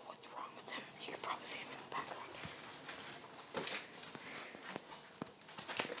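Soft, unintelligible whispering, with scattered short clicks and rustles.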